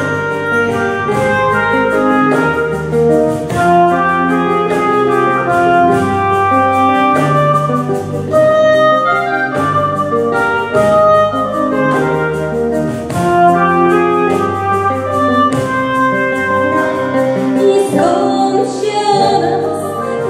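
Live band playing an instrumental break: a woodwind solo carries the melody over acoustic guitar, bass and drums keeping a steady beat.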